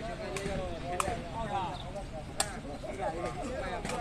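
Spectators chattering, with three sharp smacks about a second and a half apart: a sepak takraw ball being kicked back and forth in a rally.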